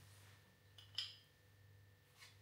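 A metal spoon clicking against the crown cap of a glass beer bottle as it is worked at the cap to pry it off: a faint scrape, then one sharp metallic click about a second in. Otherwise near silence.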